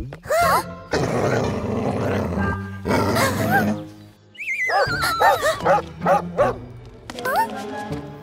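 A cartoon bull terrier growling and barking over background music, with a run of short, wavering, falling cries about halfway through.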